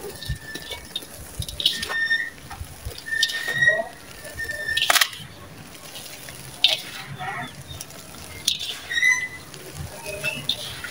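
Dry sand-cement being crumbled and squeezed by hand, with irregular gritty crunches and grit falling back into a steel bowl; the loudest crunch comes about five seconds in.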